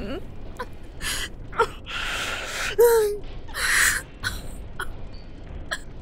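A woman crying: shaky, breathy sobs and sniffles, with a couple of short whimpers that fall in pitch.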